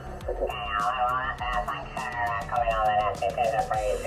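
Single-sideband voices on the 40 m amateur band, received on a Yaesu FT-710 in lower-sideband mode and heard through its speaker. The dial is being tuned, so the voices come through warbled and slide in pitch, with the thin, narrow sound of SSB audio.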